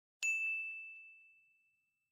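A single bell-like ding sound effect: one sharp strike a fraction of a second in, leaving one high, clear tone that rings and fades away over about a second and a half, with a couple of faint clicks just after the strike.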